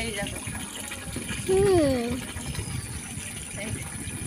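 Water running from an outside tap and splashing onto a concrete floor as fish pieces are rinsed by hand. A short, falling vocal sound comes about one and a half seconds in.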